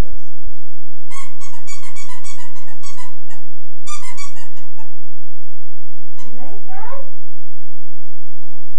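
Dog whining in two quick runs of short, high-pitched squeaks, followed by a rising whine near the end.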